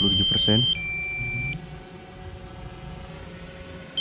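Low-battery warning alert of a DJI Mavic 2 Pro: a single high beep held for under a second, then a two-tone beep about as long, the pattern starting again about four seconds later. It signals that the battery has dropped to the 27% warning level set by the pilot.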